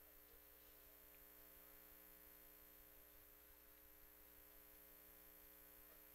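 Near silence on the broadcast feed, with only a faint steady electrical hum.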